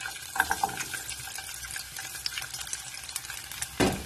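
Whole garlic cloves sizzling and crackling in hot oil with fenugreek seeds in a nonstick frying pan, with a louder knock near the end.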